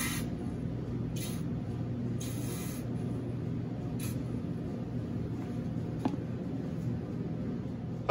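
Plastic squeeze bottle squirting coffee extract in a few short hissing spurts, about one a second over the first four seconds, over a steady low hum.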